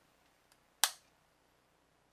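A single sharp metallic click from the AR-15 as the assembled rifle is handled, about a second in.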